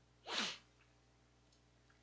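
A man's single short, breathy vocal burst about a quarter second in: a quick noisy exhalation with a falling voiced tail.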